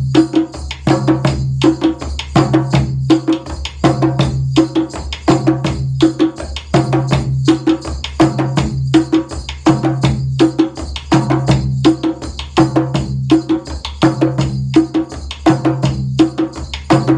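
Two djembes played by hand over a djun djun (dundun) bass drum beaten with sticks, the stick part giving sharp clicks. All three lock into one steady repeating rhythm pattern.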